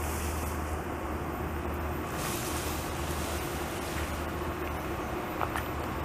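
Steady low outdoor rumble. About two seconds in comes a brief rustling scrape: a beaver dragging a felled tree, its leafy branches and trunk pulled through brush and over dirt.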